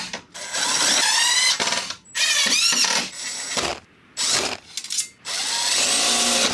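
Yellow cordless driver driving screws through a steel mini-split mounting plate into a wooden panel, in about five short runs, the motor whine rising in pitch as each run spins up.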